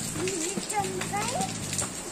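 A toddler's high voice babbling and vocalising without clear words, its pitch wavering up and down, over a steady low hum and a few faint clicks.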